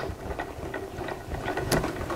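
Hand-cranked Sizzix die-cutting machine being turned, its cutting plates rolling through the rollers with a quiet run of small clicks.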